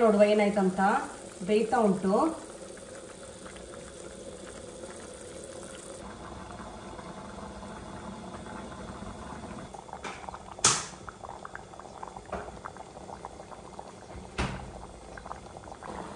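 Curry bubbling steadily at a simmer in a covered pan, with two sharp clicks in the second half.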